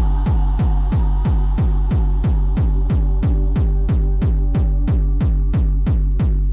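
Hard techno at about 182 beats a minute: a deep kick drum hitting about three times a second under held synth tones. In the second half a hissy upper layer fades away and each beat sounds crisper.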